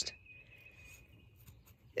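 Quiet outdoor ambience with a faint, thin, high-pitched steady tone that starts just after the beginning and fades out about a second and a half later.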